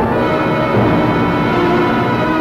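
Dramatic orchestral film-trailer score playing held chords, which shift to a new chord a little under a second in.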